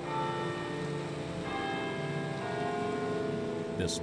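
Church bells ringing: several strikes of different pitches, each note ringing on.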